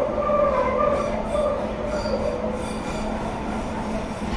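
London Underground 1973 Tube Stock train running, heard from inside the carriage: its wheels squeal on the rails in several wavering high tones over a steady low hum and rumble. The squeal fades near the end.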